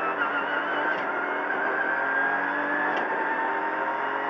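Ford Fiesta R2T rally car's three-cylinder turbocharged 1.0 EcoBoost engine, heard from inside the cabin, pulling hard in second gear. Its note climbs steadily under full acceleration.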